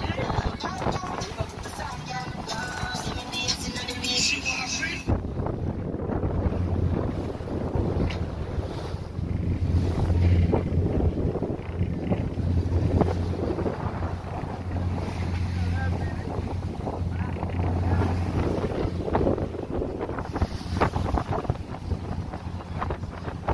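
Wind on the microphone and waves washing past the hull of a wooden cargo boat under way, over a steady low drone. The sound changes abruptly about five seconds in, after which the low drone is stronger.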